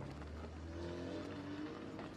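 Engine of a military pickup truck driving off along a dirt track: a steady low drone, with a higher engine note rising over it in the middle.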